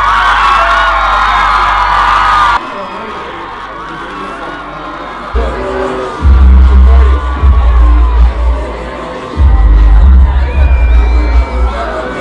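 A concert crowd screaming and cheering over dance music for about two and a half seconds, then a cut. After a short, quieter stretch, deep bass from the dance music pounds in long heavy stretches, muffled, with little but the low end coming through.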